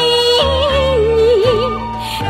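Japanese enka-style song: a singer holds one long note, then slides into a wavering, ornamented run with heavy vibrato over a sustained accompaniment whose bass changes near the end.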